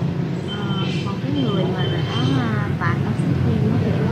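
Steady low rumble of street traffic under soft, quiet speech.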